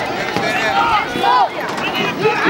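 Several voices talking and calling out over one another, with no single clear speaker: sideline chatter from players and spectators at an outdoor football game.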